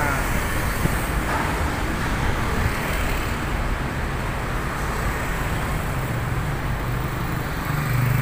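Steady road traffic noise from a street close by, an even rush of passing vehicles, with a low engine hum coming up near the end.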